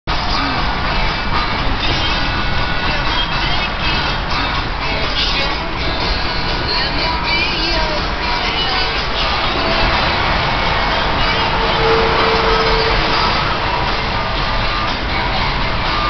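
Steady road and wind noise inside a car's cabin at high highway speed, with music playing under it.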